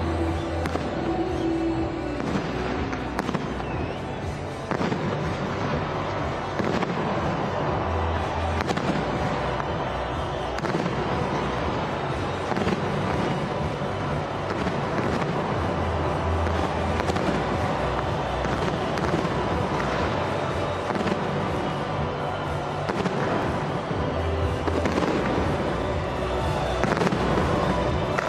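A fireworks display: shells launching and bursting with dense, continuous crackling and popping, over loud accompanying music with recurring deep bass notes.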